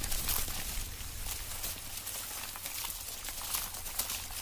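A dense, steady rustle of countless fine ticks and patters from a mass of desert locust hoppers crawling over dry ground, with a low steady hum beneath.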